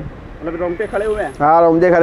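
A man speaking Hindi, with a brief faint high-pitched tone about halfway through.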